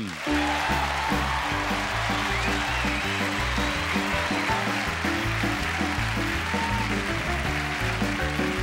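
A studio band plays the comedian's walk-on music, its bass notes stepping along at a steady pace, over audience applause.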